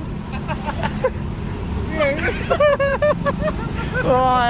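Steady low drone of an idling vehicle engine, with short bursts of people's voices about halfway through.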